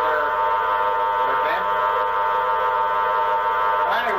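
Spiricom's bank of steady electronic tones sounding together as one constant chord, the carrier from which its robotic "spirit voice" is formed. The tones waver briefly once, about a second and a half in.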